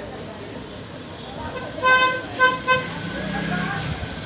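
A vehicle horn honking three short times, starting about two seconds in, followed by a low engine hum near the end.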